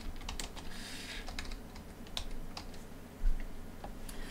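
Typing on a computer keyboard: a quick run of keystrokes that thins out after about two seconds. A single dull low thump comes near the end.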